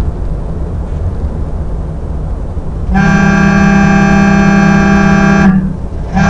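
Low road and engine rumble inside a small car's cabin. Then a loud, steady car horn comes in about halfway and is held for over two seconds, stops briefly, and sounds again at the very end.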